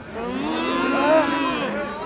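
A man's voice through a PA system, drawing out one long chanted exclamation for nearly two seconds, its pitch arching up and then falling away.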